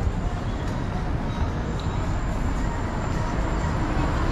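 City street ambience dominated by road traffic: a steady low rumble of passing vehicles, with a faint thin high whine coming in about a second and a half in.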